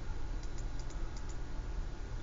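Light clicks, about six within a second, over steady room noise with a low hum.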